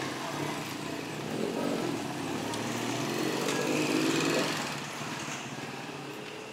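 A small motorcycle engine passing along the street: its hum grows louder to a peak about four seconds in, then fades away.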